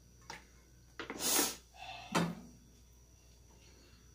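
Kitchen handling sounds as a plastic bottle of cooking oil and a small frying pan are handled at a gas stove: a faint click, a short hiss about a second in, then a single knock a little after two seconds.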